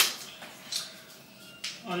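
A few sharp clicks from a telescopic selfie-stick tripod being handled: the loudest at the start, a softer one under a second in, and another near the end.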